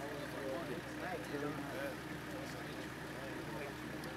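Several voices talking and greeting over the steady low hum of an idling minibus engine.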